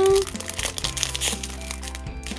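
Metallic foil blind bag crinkling as hands work it open and pull out a small plastic toy figure, over soft background music.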